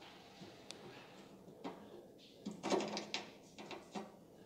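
Faint, scattered clicks and small metal handling sounds as a Phillips screw is backed out of the end of a grill's pellet hopper and worked free by hand.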